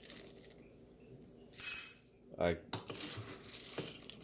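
Whole coffee beans scooped with a metal scoop from a stainless steel canister and tipped into a small ceramic ramekin, rattling and clattering. There is a sharp ringing clink about halfway through, with a low steady hum underneath.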